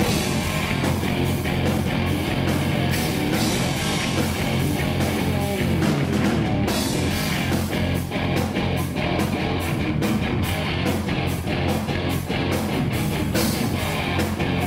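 Live rock band playing at full volume: electric guitars over bass and a steady drum beat, with no vocals.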